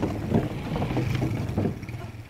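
Motorcycle engine running at low speed as the bike rolls slowly over a wooden suspension bridge, with wind on the microphone and a few knocks along the way.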